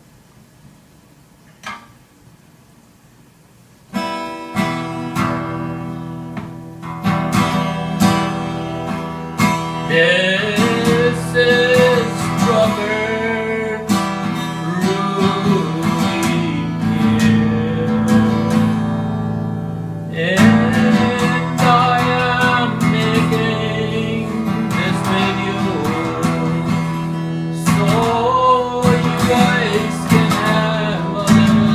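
Acoustic guitar being strummed, with a man singing along. After a quiet start the strumming comes in about four seconds in. The voice enters around ten seconds, drops out for several seconds in the middle, and returns.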